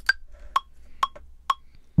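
Ableton Live's metronome counting in a bar before recording: four short clicks at 128 BPM, about half a second apart, the first pitched higher to mark the downbeat.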